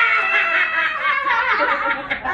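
A group of young women laughing loudly and cheering in high-pitched voices, a burst of group laughter.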